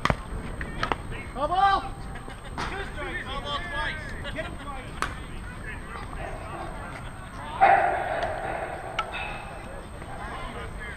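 Players' voices calling and shouting across a softball field, with a few sharp knocks; a louder, longer call comes about seven and a half seconds in.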